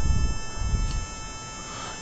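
Background noise between spoken phrases: a low rumble that fades over the first half second or so, under a faint set of steady high-pitched electronic tones.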